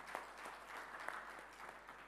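Audience applauding, many hands clapping together, the applause thinning out toward the end.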